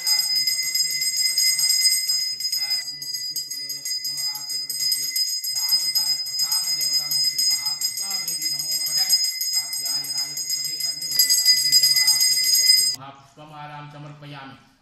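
Hand-held brass pooja bell rung continuously in rapid strokes, ringing steadily apart from a brief break about three seconds in, and cutting off suddenly about a second before the end. Under it a man's voice chants mantras.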